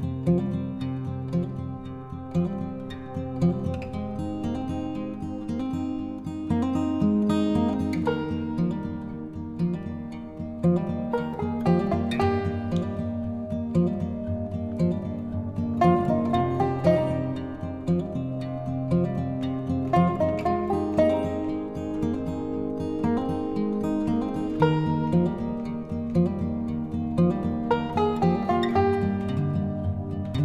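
Instrumental background music of gently plucked strings, guitar-like, with an even flow of picked notes.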